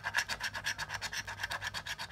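A coin scraping the coating off a scratch-off lottery ticket in quick back-and-forth strokes, about ten a second.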